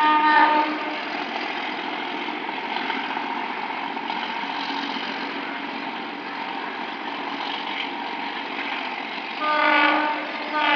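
Alco RSD-39 diesel locomotive hauling a train away, its horn giving a short blast at the start and another just before the end, over the steady sound of the engine working and the train rolling on the rails.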